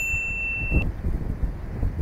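Wind buffeting the microphone, a low rumbling rush throughout. At the start a single bright ding, an on-screen notification-bell sound effect, rings on one steady pitch and cuts off under a second in.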